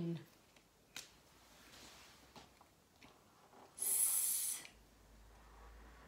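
A woman's drawn-out "sss", the s sound spelled aloud, lasting just under a second, about four seconds in. A single sharp click comes about a second in.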